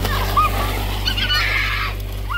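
Children squealing in short high-pitched yelps over the hiss and splash of water from a garden hose on a plastic house-wrap slip and slide, with background music holding a low chord underneath.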